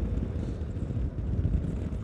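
Yamaha Ténéré 250's single-cylinder engine running steadily on the move, largely buried under a steady low rumble of wind on the camera's microphone.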